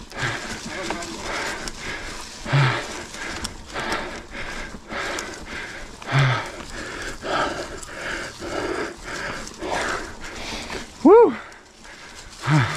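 Mountain biker breathing hard while pedaling up a steep trail climb, a heavy breath about once a second, with a short voiced grunt near the end.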